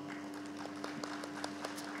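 Audience applauding lightly, a scatter of hand claps.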